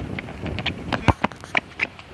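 A quick run of short, sharp knocks and scuffs: sneakers stepping and scuffing on a hard tennis-court surface, with ball touches, the loudest about a second in.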